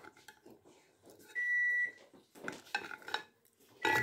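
A single steady electronic beep, about half a second long, a little over a second in. Light clinks of a plastic container and utensils come before and after it.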